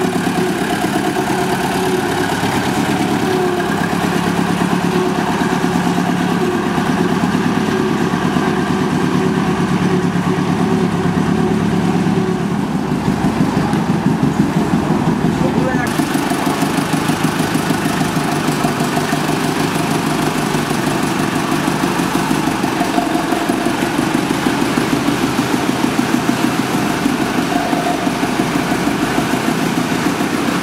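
Diesel engine of a small 600 mm narrow-gauge locomotive running steadily. From about halfway through the sound becomes a rapid, even pulsing, as of an engine idling close by.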